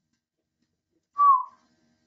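A single short, high whistle-like tone about a second in, gliding slightly downward and lasting about a third of a second, in otherwise near silence.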